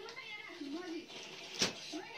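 A child's voice, faint and wavering, with one sharp click about one and a half seconds in.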